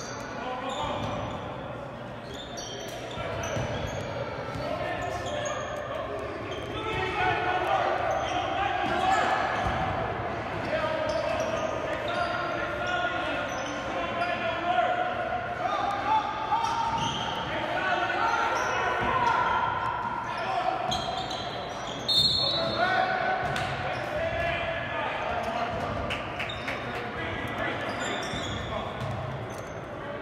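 Basketball game sound echoing in a gym hall: a basketball dribbled and bouncing on the hardwood court, with players and spectators calling out.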